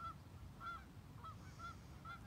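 Geese honking faintly, four short calls about half a second apart.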